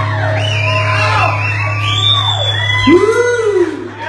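Live rock band playing loud: a low bass note holds steady underneath while high wailing pitches sweep up and down over it, with yelling mixed in.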